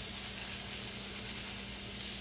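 Baby bella mushrooms frying in a pan, a steady low sizzle as they brown. A soft rustle of breadcrumbs shaken from a canister into a bowl about half a second in.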